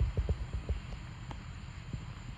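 Dull thuds of a horse's hooves on soft arena sand, several in quick succession in the first second and fewer afterwards, over a steady low rumble of wind on the microphone.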